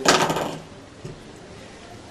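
A brief clatter of small hard objects being handled, lasting about half a second, then only the quiet background of the room.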